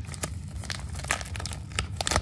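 White paper packaging crinkling and tearing as hands pull a mailer open, a string of irregular crackles.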